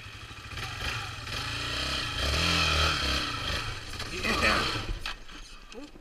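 Yamaha Raptor 350 quad's single-cylinder four-stroke engine running under throttle, building to its loudest about two seconds in and easing off near the end.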